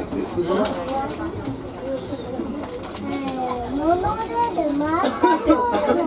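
Speech: passengers talking, among them a child's high voice, with bending pitch lines strongest in the second half.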